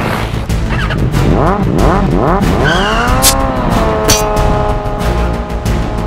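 A motorcycle engine sound effect revving up and down several times in quick swells, then one longer rev that settles into a steady drone, over background music.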